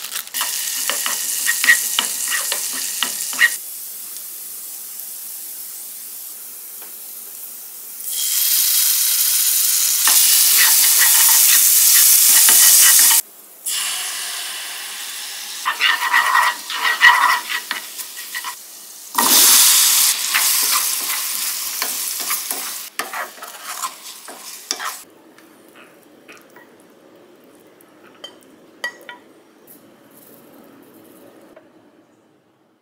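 Minced garlic sizzling in melted butter in a nonstick frying pan, stirred with a wooden spatula that scrapes and taps the pan, with honey and rice cakes then frying in it. The sizzle comes in several stretches that start and stop abruptly, loudest about a third of the way in and again past the middle, and dies to a faint hush for the last few seconds.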